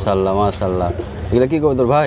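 Domestic teddy pigeons cooing close by, two throaty coo phrases, the second ending with a falling note.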